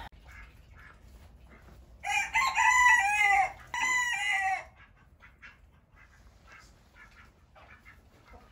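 A rooster crows once: a long call of about two and a half seconds, starting about two seconds in, with a short break near its end. Faint clucks and small knocks sound around it.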